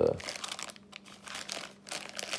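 Plastic wrapping crinkling and crackling in irregular bursts as a hand presses and shifts it around a camshaft in its foam-lined box.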